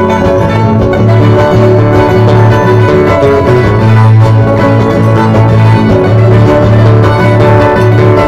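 Andean string-band music for the qorilazo dance, with guitars and a bowed string instrument playing a steady tune.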